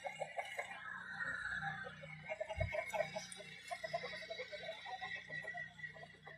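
Chickens clucking softly, in many short, quiet, irregular calls, with one low thump about two and a half seconds in.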